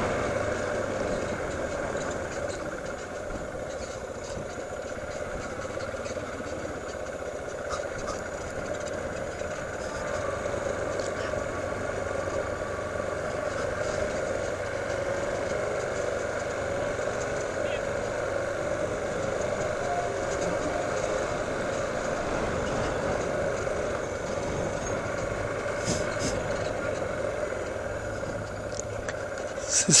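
Yamaha motorcycle engine running steadily at low street speed, with road and wind noise, heard from a camera mounted on the bike.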